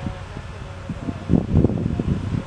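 Outdoor background noise with wind buffeting the microphone and indistinct voices. The voices and buffeting grow louder and more irregular in the second half.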